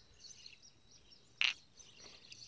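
Faint bird chirps in the background, with one brief, sharp noise about one and a half seconds in.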